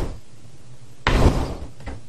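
A single sudden thump about a second in, dying away within half a second, with a few faint small knocks after it.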